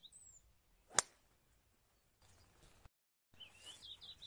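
A driver striking a golf ball off the tee: one sharp crack about a second in.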